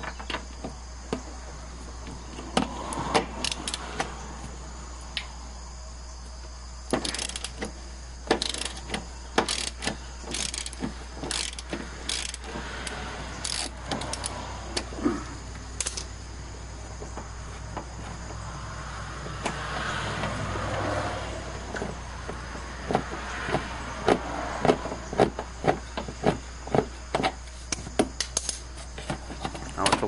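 Hand ratchet with a 13 mm socket on long extensions clicking in quick runs as a long bolt is unscrewed, with light metal clinks of the tool, over a steady low hum.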